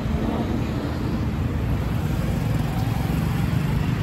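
Steady low rumble of a car and street traffic, with no clear events standing out.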